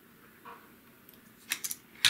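Faint handling sounds of a small adhesive PTFE mouse foot being peeled off its paper backing, with a brief cluster of sharp crackles about one and a half seconds in.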